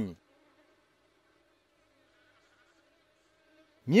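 Faint, steady insect buzzing.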